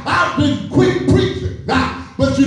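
A preacher's voice chanting the sermon in a sung, pitch-stepping style (whooping), in short phrases with brief breaks between them.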